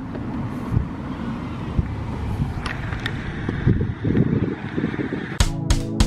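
A car passing on a road, heard as a steady tyre-and-engine rush. Near the end an intro music sting cuts in, with sharp repeated hits over sustained tones.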